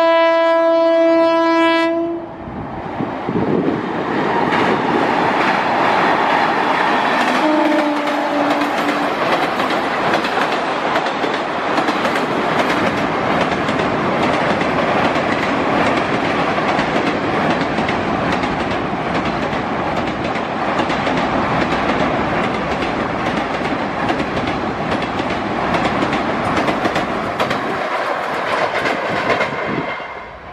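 Indian passenger train horn blowing for about two seconds, then the train's coaches running past with steady wheel clatter over the rail joints. A short, quieter horn note sounds about 8 s in. The rushing sound fades near the end.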